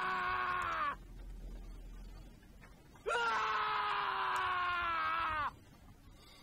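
A man's long, drawn-out scream from a drama clip, heard twice: the first cry breaks off about a second in, and a second cry starts about three seconds in and is held for about two and a half seconds, its pitch sagging as it ends.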